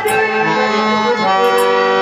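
Harmonium playing held chords with no voice over them, shifting to a new chord a little over a second in.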